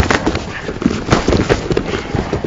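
Rapid, irregular smacks and thuds of strikes landing on padded sparring gear (headgear and body protectors) during full-contact sparring, several a second.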